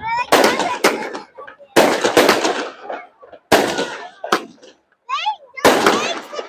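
Aerial fireworks bursting overhead: a string of sharp bangs, about eight in six seconds, with voices heard between them.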